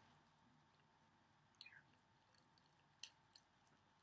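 Near silence with a few faint, short wet sounds of a Chihuahua licking smoothie from the mouth of a glass mason jar: one about one and a half seconds in, then two small clicks around three seconds in.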